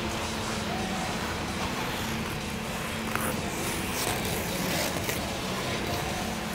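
Steady rumbling background noise of an indoor ice rink, with a few faint scrapes of figure-skate blades on the ice about three to five seconds in.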